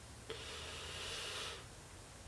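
A man's audible breath, a soft rush of air lasting just over a second.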